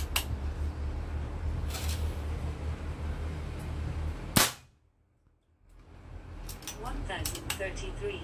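A single shot from a bullpup PCP air rifle about four and a half seconds in, one sharp crack. It is the first shot of a chronograph velocity string with a 14-grain pellet, which clocks about 1033 fps.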